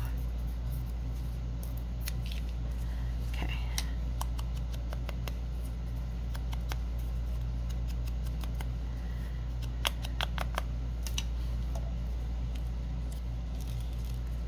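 Small handling sounds of paper and craft tools on a tabletop: scattered short clicks and taps, with a quick cluster of sharp clicks about ten seconds in, over a steady low hum.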